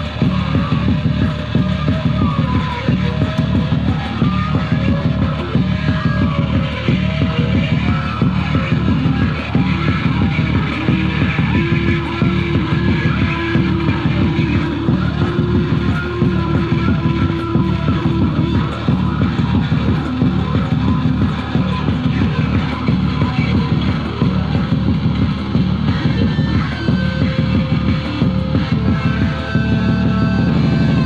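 Loud live electronic noise music played on table-top electronic gear: a dense low drone pulsing about once a second, with wavering, gliding higher tones above it.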